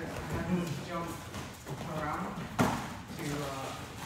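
Kickboxing sparring on a matted gym floor: one sharp impact about two and a half seconds in, a strike landing or a foot hitting the mat, with voices talking around it.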